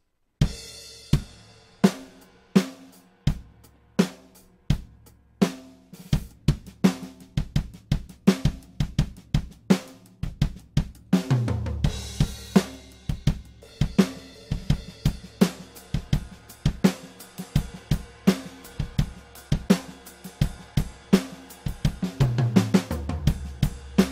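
Sampled acoustic drum kit from the Toontrack Americana EZX library playing back a laid-back, old-school country-style MIDI groove with kick, snare, hi-hat and cymbals. It starts about half a second in. Around the middle a cymbal crash comes in and the groove gets fuller with more cymbal wash, and another crash swells near the end.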